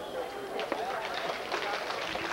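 People talking near the microphone over a series of short thuds from a horse's hooves as it lands from a jump and canters on.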